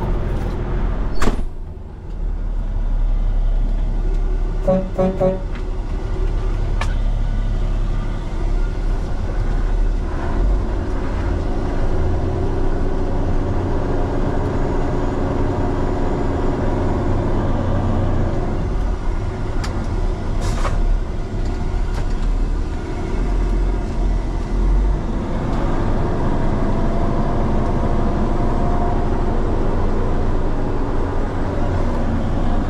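Peterbilt 389X heavy tow truck's diesel engine running steadily, heard from inside the cab. A door shuts about a second in and the cab goes quieter, and there is a brief beeping about five seconds in.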